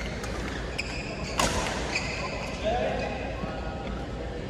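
Badminton rackets hitting a shuttlecock several times in a rally, the sharpest hit about a second and a half in, with sneakers squeaking on the court floor. A brief shout from a player follows near the end.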